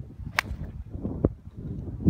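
Mid iron striking a golf ball off the tee: one crisp, sharp click about half a second in, then a duller knock just under a second later, over a low rumble of wind on the microphone.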